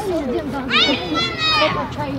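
Children's voices shouting and calling across a football pitch during play, high-pitched calls loudest from about a second in.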